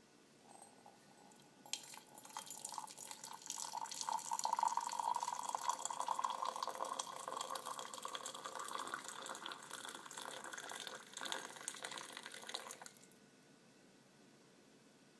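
Hot liquid being poured into a mug, starting about two seconds in and stopping abruptly near the end. A note in the splashing rises slightly as the mug fills.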